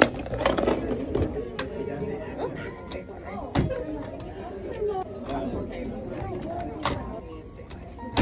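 Background chatter of several voices, with a few short, sharp knocks.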